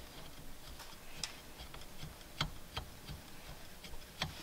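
Faint, irregular metallic clicks and ticks as the steering-wheel nut is spun on by hand onto the steering shaft inside a short hub, with a few sharper clicks in the middle.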